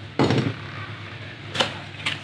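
A small cardboard box being handled and its flap opened: a short scraping rustle, then a single sharp tap about a second and a half in.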